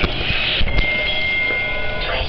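Railway station platform noise, a mix of low rumble and crowd, with a steady high electronic tone held for just over a second in the middle.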